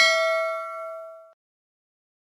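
Notification-bell sound effect from a subscribe-button animation: a bright ding that rings on and fades, then stops about a second and a half in.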